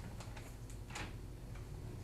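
Scattered light clicks and taps at uneven intervals, the sharpest about a second in, over a steady low hum.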